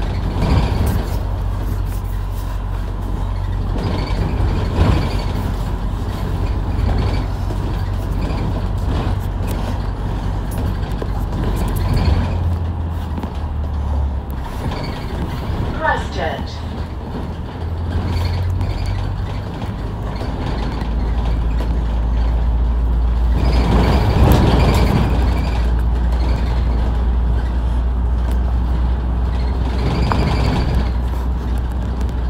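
A bus engine running as the bus drives, heard from inside on the upper deck, with scattered knocks and rattles. The low drone changes pitch a few times about midway through, and there is a louder stretch about three-quarters of the way in.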